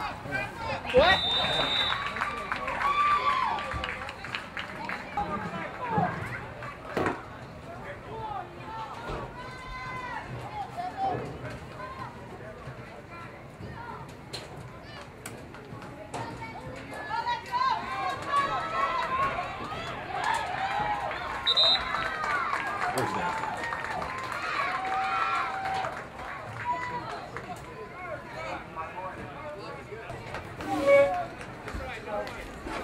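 Sideline spectators and coaches shouting and calling out from a distance, their words unintelligible. The voices are loudest right at the start and again in a long stretch in the second half, with a short high whistle about a second in.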